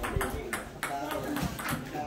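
Table tennis ball being played: a few sharp, hollow clicks of the celluloid/plastic ball on paddle and table, with voices talking in the background.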